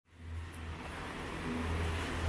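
City street traffic: a steady low rumble and hiss of cars on the road, fading in from silence at the start.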